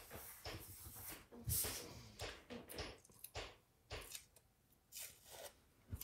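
Paper planner pages and stickers being handled: irregular rustles, crinkles and small taps as a sticker is pressed down and another is picked up, with the strongest rustle about one and a half seconds in.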